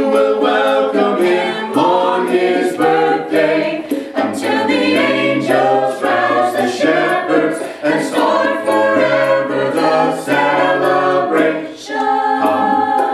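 Small mixed ensemble of men's and women's voices singing a cappella in harmony.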